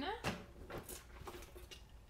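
Faint clicks and rustles of small items being handled, with a key ring and car key fob clinking lightly as they are lifted.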